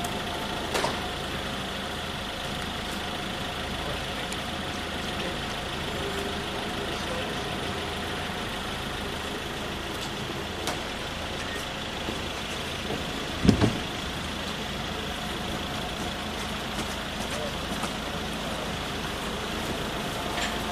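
A vehicle engine running steadily under constant street noise, with faint voices. A single loud low thump comes about thirteen and a half seconds in.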